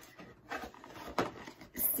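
A cardboard mailer box being opened: the lid scrapes and rustles as it is lifted, with a sharp snap a little past the middle and a short hiss near the end.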